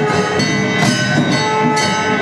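Gavari ritual music: struck metal ringing with long, overlapping tones, hit about twice a second over a steady drum beat.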